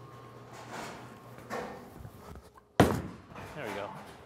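Bowling ball crashing into the pins: one sharp, loud hit about three quarters of the way through, after a quiet stretch while the ball rolls down the lane.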